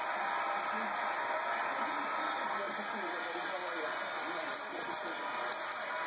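Indistinct, low-level background speech over a steady hiss, with no clear words.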